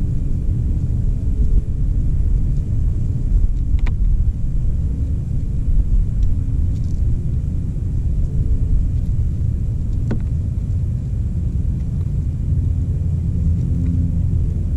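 A steady low rumble, with a few faint sharp ticks about four and ten seconds in.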